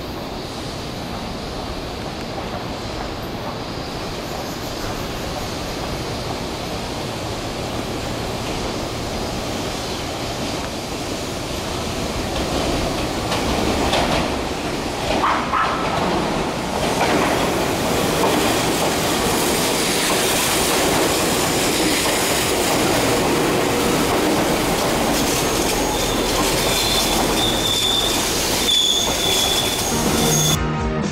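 Tobu Railway Ryomo limited express electric train approaching and passing on curved track: the running noise builds from about twelve seconds in and stays loud, with wheel clatter over the rails. Steady high wheel squeal near the end.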